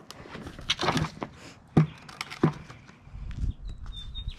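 A plastic bucket being handled on a concrete driveway: a few sharp knocks, about a second in, near two seconds and at two and a half seconds.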